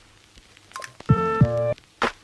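Background music: electronic synth chord stabs with percussion hits. It is nearly quiet for about the first second, then the chords come in.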